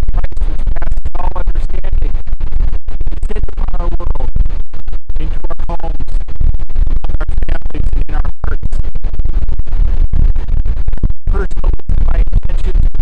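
Heavy wind buffeting a phone microphone, loud, deep and distorted, with brief dropouts. A man's voice shows through faintly underneath, barely intelligible.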